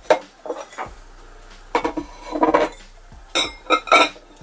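Stoneware bowls clinking and knocking against each other and the table as they are handled, a scattered string of short sharp clinks with a quick cluster near the end.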